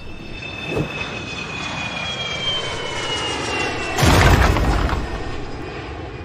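Cartoon sound effects for the video game being destroyed: a whistling, jet-like tone that slowly falls in pitch, then a sudden loud blast about four seconds in that dies away over the next two seconds.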